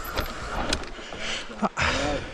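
Commencal Meta mountain bike rolling fast down a dusty dirt trail: steady tyre noise on dirt and wind on the chin-mounted camera, with a few sharp clicks and rattles from the bike and a louder burst near the end.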